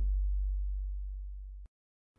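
A single very deep, steady synthesized bass tone, the final held note of a logo intro jingle, fading slowly and then cut off abruptly, leaving dead silence.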